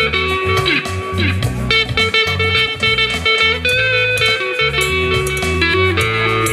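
Live amplified band playing: an electric guitar plays lead lines with bent, sliding notes over a moving bass line and keyboard.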